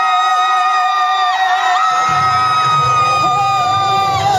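Male singer performing a pop ballad live over backing music through a PA, holding long notes. The bass of the backing drops out and comes back in about two seconds in.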